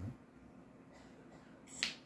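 A single sharp snap about two seconds in, over a faint steady hum.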